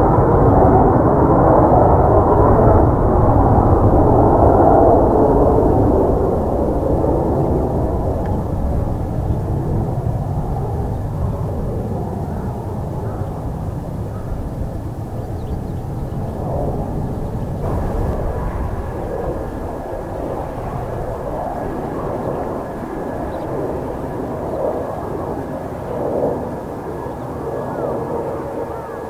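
Jet noise from a Mitsubishi F-2B fighter's single F110 turbofan engine as it flies past overhead. The noise is loud for the first five seconds or so, then fades slowly as the jet moves away.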